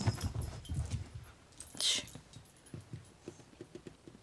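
Dog sniffing: one loud sniff about two seconds in, then a run of short, quick sniffs near the end. Dull handling rumble from the moving phone in the first second.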